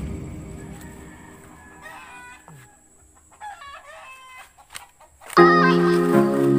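Background music fades out, leaving a quiet stretch with faint chicken calls and a rooster crowing. The music comes back in loudly near the end.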